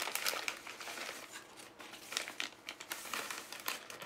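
Paper wrapper crinkling and rustling as it is handled close to the microphone, in dense, irregular crackles.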